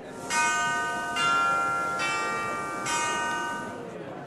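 Four bell-like chime notes struck in turn, a little under a second apart, each ringing on into the next and the whole fading near the end: a short logo jingle.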